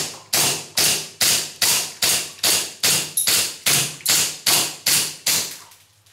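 Cybergun Colt 1911 CO2 blowback airsoft pistol firing a steady string of about a dozen shots, roughly two a second. The magazine is fired empty and the slide locks back after the last shot, a little before the end.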